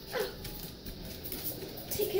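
Dog giving one short falling whine as it takes a plush toy in its mouth, then light clicks of its claws on the tile floor as it walks off.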